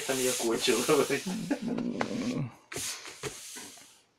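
A man's low, wordless voice for the first two and a half seconds or so, followed by a few soft rubbing and brushing noises.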